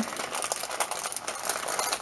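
Iridescent mylar bag crinkling as it is handled, an irregular run of small crackles.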